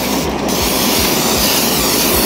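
Aerosol can of PAM cooking spray hissing in one continuous spray onto a skillet, starting about half a second in.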